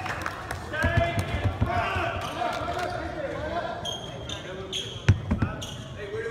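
Basketball bouncing on a hardwood gym floor, with a loud thump about five seconds in, amid players' voices and short squeaks.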